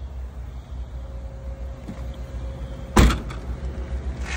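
One sharp thud about three seconds in, the rear liftgate of a Subaru Crosstrek being shut, over a steady low rumble.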